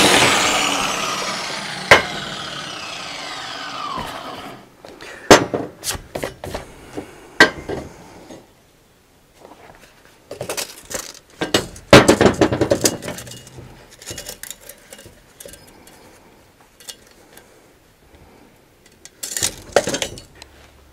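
Angle grinder spinning down after a short run, a whine falling steadily in pitch over about four seconds. Then scattered metallic clanks, clinks and knocks of steel being handled on a steel welding table, with a short cluster of them about halfway through.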